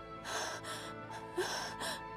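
A woman crying, with several gasping, breathy sobs, over sustained background music.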